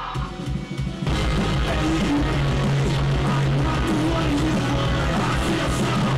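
Pop-punk rock song played loud: after a softer breakdown the full band comes back in about a second in, distorted guitars and drums in a heavily compressed mix, with a male voice singing over them.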